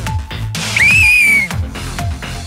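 A whistle blown once, a single clear high tone of about two-thirds of a second that starts sharply and sags slightly in pitch, the signal to take the penalty kick. Background music with a steady beat runs underneath.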